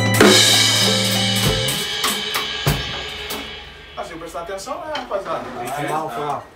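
Pagode band of drum kit, tantã and pandeiro ending a number about a second and a half in, a cymbal ringing on and fading away after the last hit. Men's voices start talking near the end.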